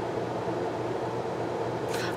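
Steady background hiss with a faint low hum, an even room tone with no distinct events.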